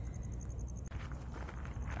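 Faint footsteps on gravel under a steady low rumble of wind on the microphone.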